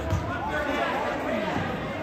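Indistinct chatter of several people's voices in a school gym, with a single dull thump just after the start.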